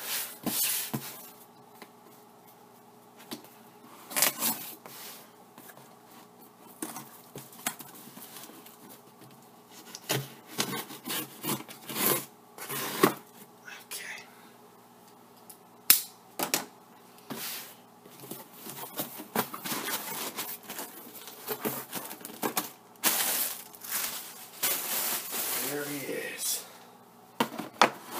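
A cardboard shipping box being handled and opened: packing tape tearing, cardboard scraping and flaps rustling, with scattered knocks against the table. The loudest is a sharp knock about 16 seconds in. A faint steady hum runs underneath.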